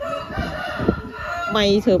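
A single long animal call, held steady for about a second and a half, then cut off by a brief spoken word.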